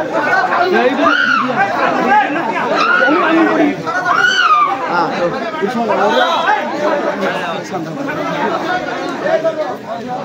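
Crowd of many people talking and calling out over one another, with louder calls standing out about one second and four seconds in.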